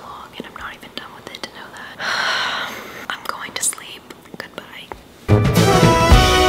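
A woman whispering close to the microphone, with a longer breathy rush of noise about two seconds in. Music starts suddenly near the end.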